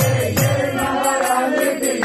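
Kirtan: a group chanting a devotional mantra, with a mridanga drum beating and small hand cymbals ringing.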